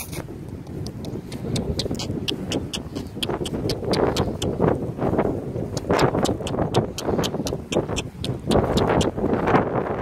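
Wind rumbling on the phone microphone, with a run of quick, evenly spaced clicks, about four a second, starting about a second and a half in.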